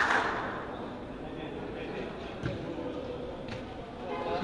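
A football kicked on artificial turf, a sudden thud that rings on in the roofed hall, then low hall noise with a softer thud about two and a half seconds in.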